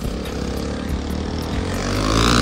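KTM RC sport motorcycle's single-cylinder engine pulling away and accelerating, its pitch rising.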